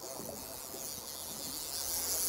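Steady hiss of wind and choppy water over a faint low hum from the boat's outboard motor while trolling.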